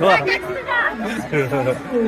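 Speech only: people talking close by, voices overlapping as crowd chatter.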